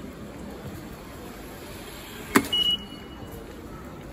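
Steady background noise while walking across a tiled floor. About two and a half seconds in comes a sharp click, followed at once by a short, high electronic beep, the loudest sound here.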